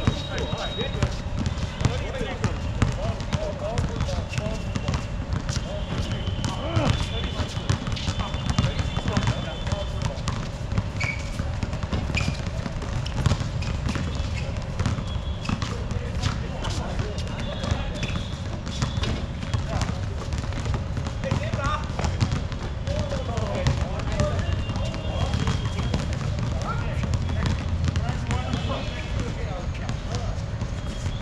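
A basketball bouncing on an outdoor hard court as it is dribbled, in scattered irregular thuds, with indistinct voices of players calling out and occasional short high squeaks.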